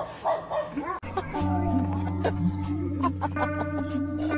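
Dogs barking and yelping in short bursts for about the first second. After a sudden cut, music with long steady low notes and a melody above them.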